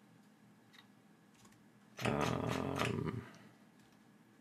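A low, raspy growl-like vocal sound lasting just over a second, starting about halfway through, after a couple of faint clicks.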